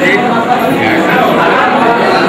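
Many voices talking at once in a crowded hall, a loud, steady hubbub with no single speaker standing out.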